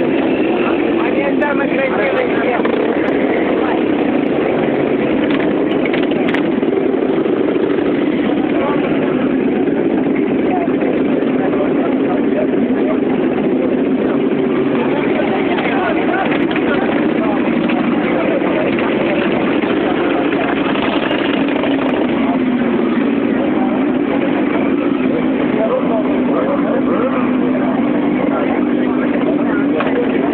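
Motorcycle engines running together in a large group, a steady mechanical drone, with a crowd talking over them.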